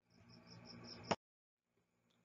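Faint chirping of a cricket, a high-pitched pulse repeating about five times a second. Just over a second in there is a click and the sound cuts off suddenly.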